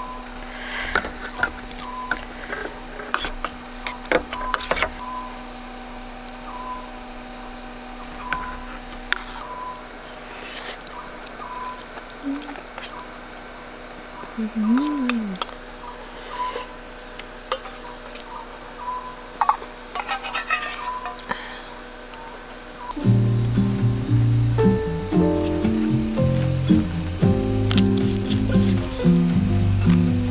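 Night insects singing in one steady high-pitched drone, the loudest sound throughout, with a few light clicks of tableware in the first seconds. Background music comes in about 23 seconds in and runs under the insects to the end.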